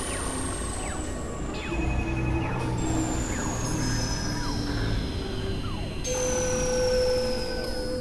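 Experimental electronic synthesizer drone music: a dense low drone under high whistling tones that glide slowly downward in pitch, with a steady held tone coming in about six seconds in.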